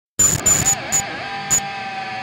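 Intro music sting: a few sharp percussive hits over a sustained lead line that bends up and down in pitch, starting a fraction of a second in.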